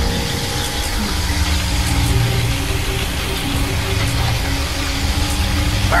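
Continuous electric energy-beam sound effect from cartoon ghost-blaster beams, a dense noisy rush with a deep rumble, laid over background music.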